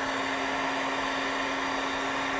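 Handheld electric heat gun blowing steadily, an even rush of air over a constant low hum, aimed at a pot to remelt leftover candle wax.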